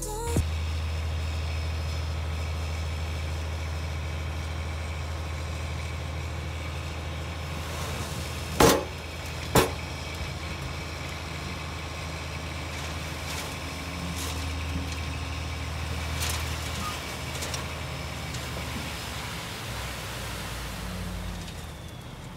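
Dump truck's engine running steadily while its raised bed tips a load onto road fabric, with two sharp clunks about halfway through. The engine hum drops away over the last few seconds.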